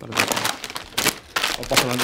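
Plastic crisp packets crinkling and rustling as they are handled, a loud irregular crackle, with a voice speaking near the end.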